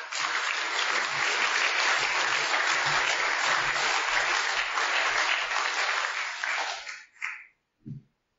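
Audience applauding, starting at once and dying away about seven seconds in.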